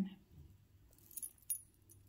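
Small metal costume jewelry clinking and jingling as it is handled, with a few light, sharp ticks about a second in and the strongest near the middle.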